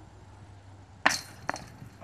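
A thrown disc golf disc strikes the metal basket with a sharp clink and a brief ring of metal about a second in, then a second, lighter knock half a second later. The disc bounces off and falls beside the basket, so the throw misses.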